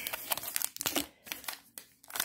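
Foil wrapper of a baseball card pack crinkling as it is handled, in quick irregular crackles.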